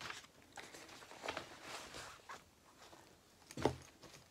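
Faint rustling and handling of paper and packaging as a cross-stitch pattern and its materials are picked up, with one louder soft bump near the end.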